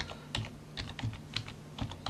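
Computer keyboard typing: a quick, uneven run of key clicks, several a second.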